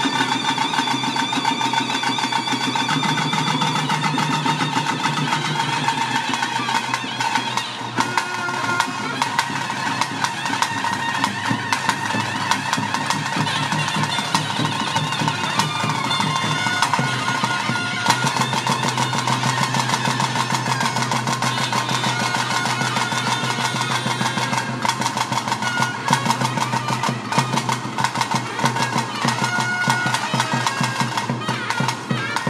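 Traditional Tulu ritual music played live at a bhuta kola: a shrill reed wind instrument's melody over a steady drone, with dense drumming.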